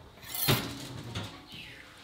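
A baking sheet being taken out of a hot oven: a sudden metallic clatter about half a second in as the pan comes off the rack, then softer rattling and a lighter knock.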